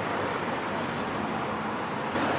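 Steady street traffic noise: an even rush of passing road vehicles with no distinct event standing out.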